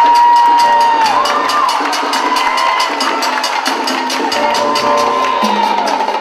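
Live salsa band with conga and bongo drums keeping a quick, steady beat while the audience cheers. Long held high notes bend up and down over the drumming.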